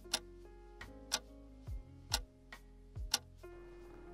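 Clock-ticking sound effect marking a one-minute hold timer, about one sharp tick a second, over soft background music with held notes and a few soft low thuds.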